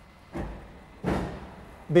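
Roller brake tester starting both front rollers together under the car's front wheels: a thump, then a louder thump about a second in with a brief rushing noise that dies away.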